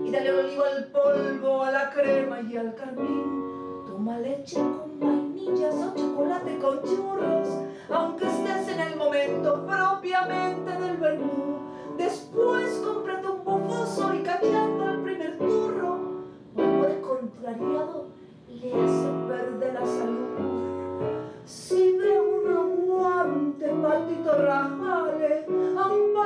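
A woman singing a tango over piano accompaniment, her sung phrases held and bending over steady chords, with brief pauses between phrases.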